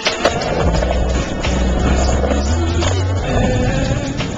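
Skateboard wheels rolling on concrete, with a sharp clack just after the start, under music with a deep steady bass line.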